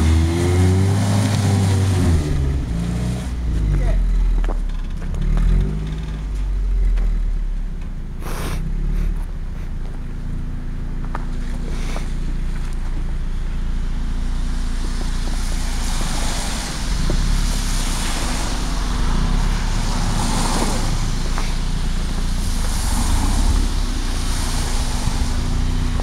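Mazda Miata engine revving up and down several times in the first few seconds as the car struggles for grip on snow on summer tyres, then running at a steady idle, with a sharp click about eight seconds in.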